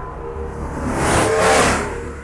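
A whoosh that swells from about half a second in, peaks around a second and a half, and fades out, over a steady low music drone.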